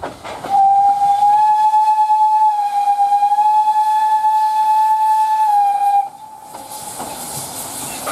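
Px29 narrow-gauge steam locomotive sounding its steam whistle in one long, steady blast of about five seconds. After it stops, a hiss builds near the end.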